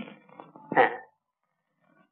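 Film dialogue: a person's voice trailing off from a sentence, then a single short spoken 'hāñ' ('yes') a little under a second in.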